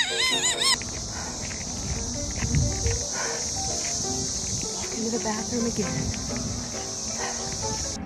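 A loud, steady, high cicada buzz that starts suddenly about a second in and holds unchanged until it cuts off, over background music. It is preceded by a brief wavering vocal cry, the loudest moment.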